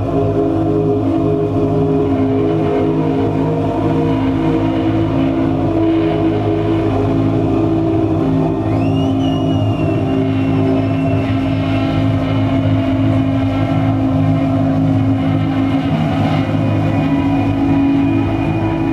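A live band playing a dark, droning ambient passage of sustained low tones and chords. About nine seconds in, a high tone glides up and holds for a few seconds before fading.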